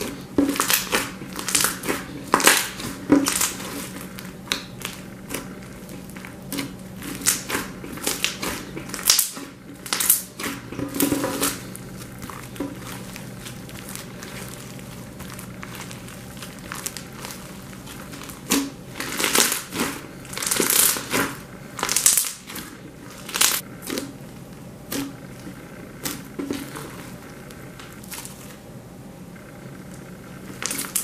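Pink beaded slime being kneaded, pressed and stretched by hand: irregular clusters of sticky crackling and popping, with quieter stretches in between.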